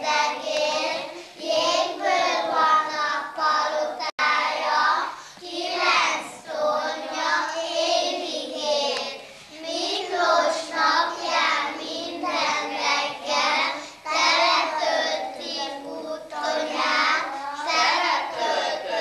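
A group of young children singing a song together in high voices, in continuous phrases with held notes.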